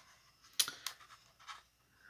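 A few light clicks and crackles of a die-cast toy car's plastic blister pack and card being handled, the sharpest about half a second in, then two fainter ones.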